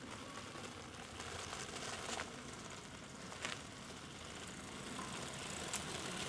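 Bicycle and inline-skate wheels rolling on an asphalt path, a steady rolling noise that grows louder as they approach, with a couple of brief clicks or rattles.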